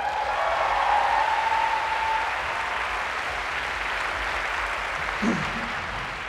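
Audience applause from a large crowd, a steady wash of clapping that slowly dies away. One long held high note, a cheer from the crowd, rises over the clapping in the first two seconds.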